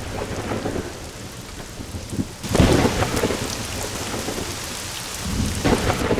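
Steady rain with a sudden loud clap of thunder about two and a half seconds in, rumbling on afterwards.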